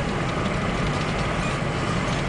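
Steady road and engine noise inside a moving car's cabin, a low rumble under an even hiss.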